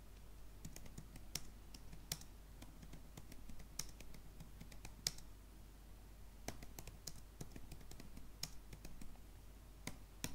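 Typing on a computer keyboard: faint, irregular key clicks, some louder than others, as a line of text is typed.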